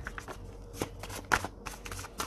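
Tarot cards being handled and shuffled, a handful of quick card-on-card clicks and snaps.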